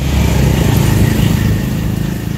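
A small motorcycle engine running close by, a low pulsing rumble that is loudest in the first second and then eases off.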